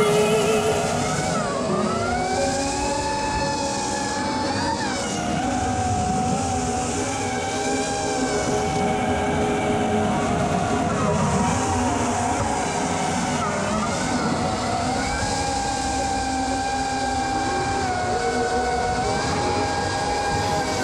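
FPV quadcopter's brushless motors and propellers whining, the pitch gliding up and down with the throttle, over a rush of air noise.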